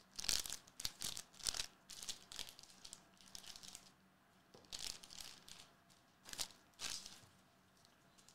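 Foil trading-card pack wrapper being torn open and crinkled by hand, in a run of short sharp rustles with a few more spaced out later.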